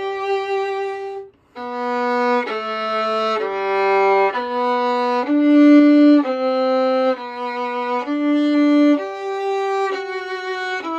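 Solo violin played slowly in practice, bowing one sustained note after another, each held about half a second to a second. A brief break comes about a second and a half in; after it the line dips to a few low notes before climbing again.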